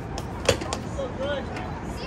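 Distant voices of people talking and calling, with a single sharp knock about half a second in.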